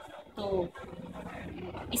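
A woman's voice in Hindi speech: a short word, then a low hum held steady for about a second as she pauses before going on.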